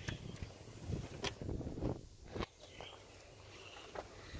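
Phone handling noise: fingers rubbing over the phone's microphone, with a few sharp knocks, and quieter in the second half.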